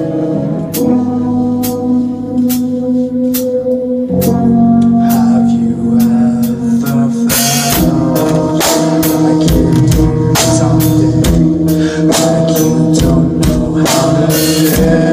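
A rock band playing live: drum kit, electric guitar and bass guitar, with sustained chords over a steady beat. The band comes in fuller and louder about four seconds in.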